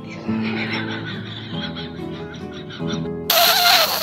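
Background guitar music, then about three seconds in a loud, harsh screech sound effect breaks in and takes over, an edited-in comic effect.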